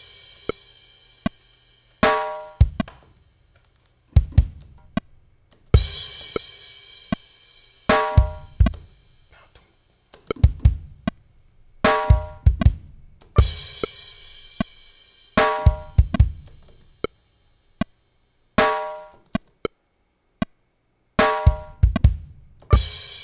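A reggae drum loop playing back: bass drum, snare and rim hits, with a crash cymbal ringing out about every eight seconds and short pitched percussion hits in between. The pattern stops briefly now and then as the short section is replayed.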